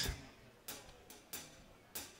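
Drummer's count-in before a song: three faint, evenly spaced drumstick clicks about two-thirds of a second apart.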